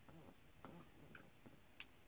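A few faint ticks and one sharper click near the end: a diamond-painting drill pen picking up square drills from the tray and pressing them onto the canvas.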